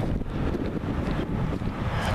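Wind blowing across the camera's microphone: a steady low rumbling buffet.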